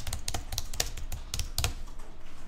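Computer keyboard typing: a quick run of keystrokes, about five or six a second, that stops shortly before the end.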